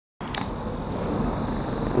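Single-deck bus engine running as the bus moves past at low speed, a steady low rumble that grows slightly louder.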